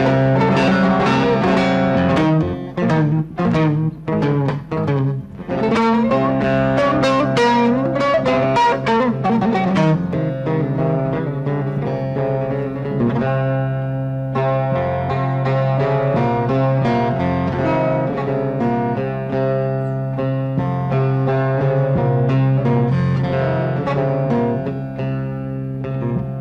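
Bağlama (Turkish long-necked lute) playing an instrumental introduction to a Central Anatolian folk air. It opens with quick, sharply struck notes, then moves to slower held melody notes over a steady low drone.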